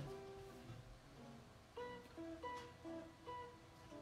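Faint soft background music of plucked acoustic guitar notes, picked one at a time in a slow melody.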